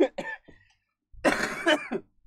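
A man coughing: a short cough at the start, then a longer cough about a second in.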